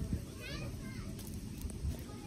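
Background voices of children at play, with a brief high rising cry about half a second in, over a low rumble.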